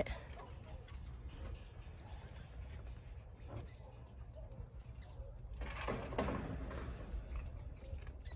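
Quiet outdoor background with a steady low rumble, and a brief scuffling rattle about six seconds in as a red fox noses at a treat-filled plastic enrichment ball on a wooden platform.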